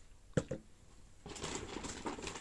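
A light knock or two, then a plastic shopping bag rustling and crinkling steadily from a little over a second in as hands rummage in it.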